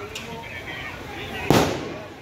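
A single loud, sharp bang about one and a half seconds in, dying away quickly, with a smaller crack just at the start, amid voices.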